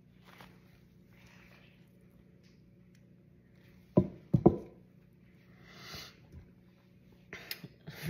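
Quiet handling of a wet acrylic-pour canvas with gloved hands: faint rustling, then two loud thumps close together about four seconds in, a soft rustle near six seconds and a few light clicks near the end.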